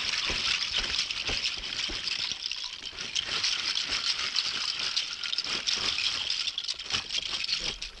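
A large mass of bottle caps being poured from a collection box into a sack, a continuous clattering rattle of many small caps hitting each other that goes on for several seconds and stops just before the end.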